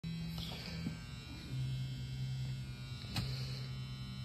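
Steady electrical hum whose pitch steps down slightly about one and a half seconds in, with one faint click about three seconds in.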